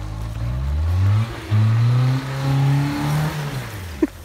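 Mitsubishi Pajero iO's four-cylinder petrol engine revving hard under load on an off-road hill climb. The revs rise, dip briefly about a second and a half in, hold high, then fall away near the end.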